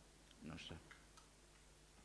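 Near silence: room tone with a low steady hum, broken about half a second in by a brief faint sound like a murmured voice or a soft click.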